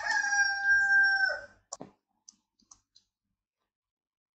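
A long, steady animal call that falls away about a second and a half in, followed by a few faint clicks.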